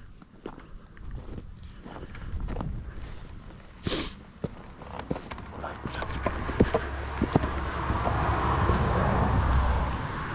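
Footsteps and scuffs on gravel and loose rock as a person climbs a rocky outcrop, with scattered taps and scrapes. Over the second half, a steady rushing noise with a low rumble builds and stays to the end.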